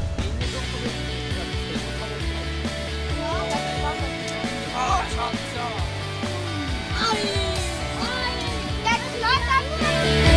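A group of children calling out and chattering over quieter background music.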